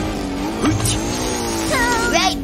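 Cartoon monster-truck engine sound effect, a steady running engine note. Near the end a high zapping sound of a ray gun begins.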